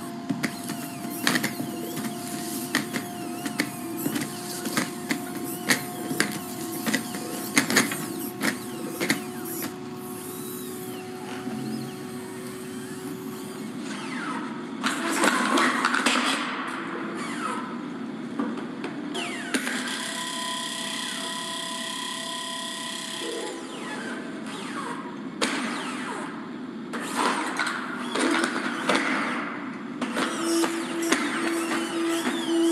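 Boston Dynamics Atlas humanoid robot moving and being shoved: a steady whine from its hydraulic power unit, with many sharp clicks and knocks through the first ten seconds, then noisier, rougher stretches as it is pushed and falls over, heard as video playback through a Zoom screen share.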